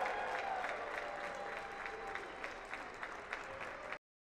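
Applause from a group of people, with many individual hand claps, slowly fading and cutting off abruptly at the end.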